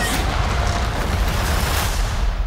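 Loud trailer sound effects of a giant creature rolling over sand: a dense, low rumble with a sharp hit at the start and another near the end. A held musical note fades out in the first second.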